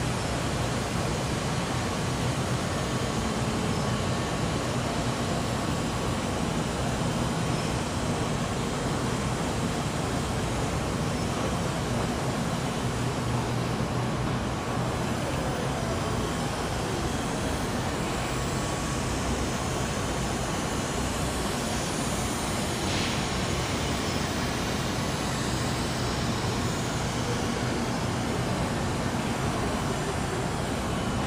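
James Burns International BB38A Wire-O binding machine running with a steady mechanical hum.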